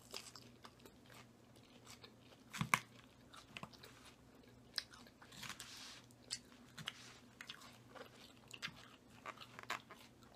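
Close-up chewing and biting of crunchy Caesar salad, romaine lettuce and croutons, with many short, sharp crunches and clicks scattered through, the loudest about three seconds in. A short rustle around the middle and a light clink or two of a fork against the glass salad bowl.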